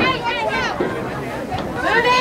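Overlapping chatter of several voices talking and calling out, with no clear words.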